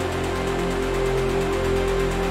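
Melodic techno from a DJ set: sustained synth tones over a low bass line, with a steady, evenly repeating beat.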